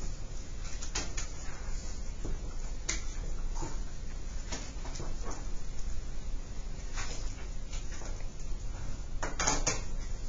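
Classroom room noise with no talking: a steady low hum with scattered small clicks and knocks, and a louder cluster of knocks near the end.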